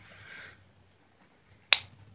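A faint hiss at the start, then near silence broken by one short, sharp click about three-quarters of the way through.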